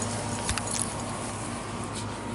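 Light clinks and rustling from dog leashes and collars, with a few short clicks about half a second in, over a steady faint hum.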